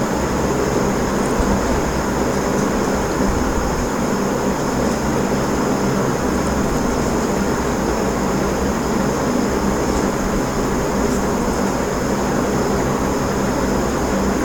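Steady background hiss with a low hum underneath, unchanging throughout, like a fan or air-conditioner running near the microphone.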